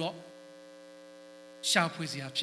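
Steady electrical hum from the church's microphone and amplification chain, a stack of even overtones heard during a pause in the sermon. A man's amplified voice picks up again near the end.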